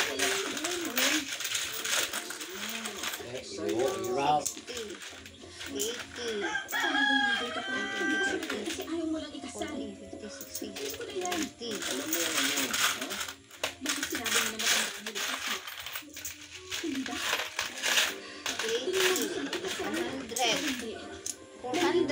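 Coins clicking and clinking as they are picked up and counted on a woven bamboo tray, amid conversation. A rooster crows once, about seven seconds in.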